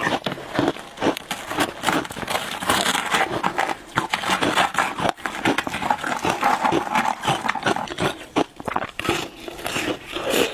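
Frozen passion fruit ice cracking and crunching in a dense run of sharp cracks, as a slab is pried loose from a plastic tray with a gloved hand and ice is chewed.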